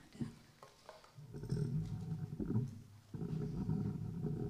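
Microphone handling noise: low rumbles and bumps as a microphone is moved and adjusted on its stand.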